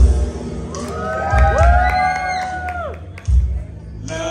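Loud amplified live music with heavy bass beats, and a long held vocal note that slides up into place and falls off at the end, over crowd cheering.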